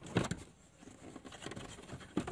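Plastic clicks and knocks from a Holden VE Commodore's glove box being handled as it is freed to drop down from the dashboard: a cluster of sharp clicks a fraction of a second in, then light scattered taps.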